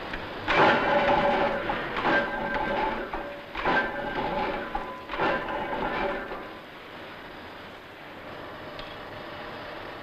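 Heavy forging machine working hot bar stock: four loud metallic strokes about a second and a half apart, each with a clanging ring, followed by a quieter steady machine noise.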